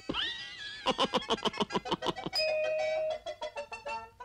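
Cartoon soundtrack: a quick gliding, whistle-like sound effect, then a cartoon cat's rapid, high laugh. After that come a held chime-like note and short plinking musical notes.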